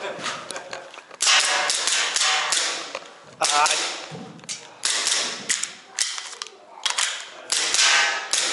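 An APS Shark gel blaster pistol firing several shots a second or two apart, each shot a sharp report that rings briefly in the small room, with the slide cycling.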